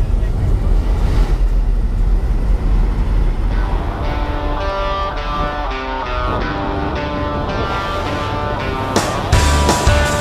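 Steady roar of wind and aircraft engine at the open door of a jump plane in flight. Background music fades in over it about three to four seconds in and comes in louder and heavier just before the end.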